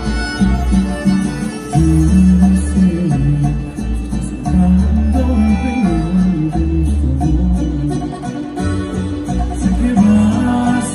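Live band playing an instrumental passage of a regional Mexican song over an arena PA, with a heavy, pulsing bass line under a stepping melody and no singing.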